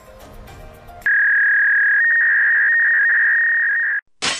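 A loud, steady, high-pitched electronic tone that starts abruptly about a second in and holds, with a second, slightly higher tone joining it about two seconds in; faint background music plays before it.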